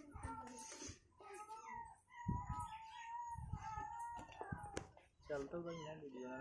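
Indistinct high-pitched voices talking, with a couple of sharp clicks in the later part.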